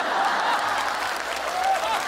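Studio audience applauding, a dense burst of clapping that breaks out suddenly right after a punchline.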